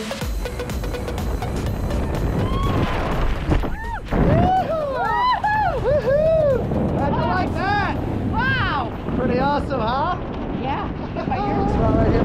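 Wind rushing over a skydiver's camera microphone during a tandem jump. From about four seconds in, once the parachute is open, it gives way to a string of excited whoops and cheers that swoop up and down in pitch.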